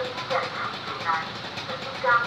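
Level-crossing loudspeaker playing a recorded safety announcement in Indonesian, a voice warning road users that trains have right of way, heard over traffic noise.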